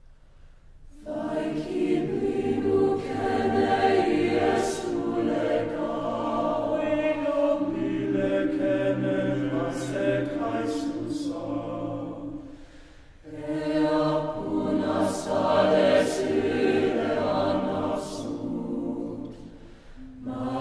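Large mixed choir of men and women singing unaccompanied, opening a choral piece by an Estonian composer. The voices come in about a second in and sing two long phrases, with a brief dip for breath about two-thirds of the way through.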